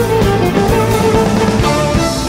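Live instrumental pop performed by a violin with a band: electric bass, guitar, piano and drum kit, with the drums keeping a steady beat.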